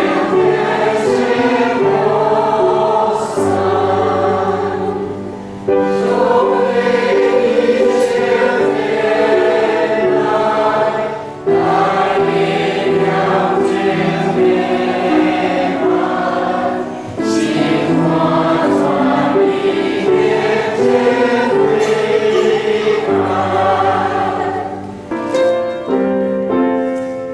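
Church congregation singing a hymn together, in phrases of about five to six seconds with brief breaths between.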